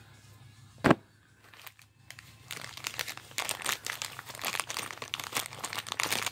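A single sharp knock about a second in, then a clear plastic bag of game dice and plastic stands crinkling and rustling steadily as it is handled.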